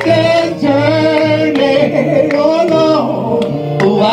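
Gospel song sung live into a microphone: long held vocal notes that slide between pitches, over an instrumental backing with a steady bass line.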